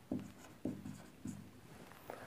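A marker writing on a whiteboard: about three short strokes, roughly half a second apart.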